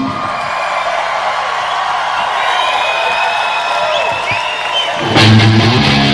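Rock concert crowd cheering and whooping between songs over a ringing electric guitar. About five seconds in, the full band comes in loud with heavy guitars and drums.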